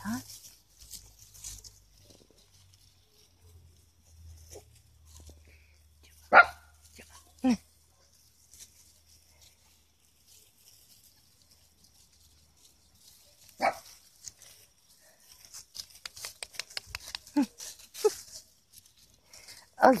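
Small dogs giving a handful of short, sharp barks spaced several seconds apart, with faint rustling of paws in dry leaves between them.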